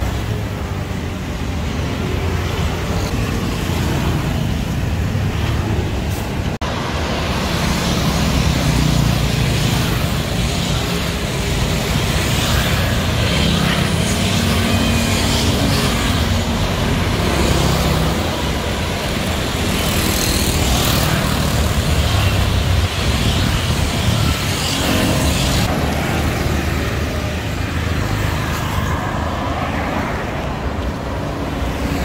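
Steady city road traffic: motorbikes and cars passing on a busy street, a continuous engine and tyre rumble.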